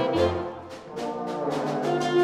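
Concert wind band playing, with brass to the fore in sustained chords over a steady beat. The band softens briefly just under a second in, then builds again.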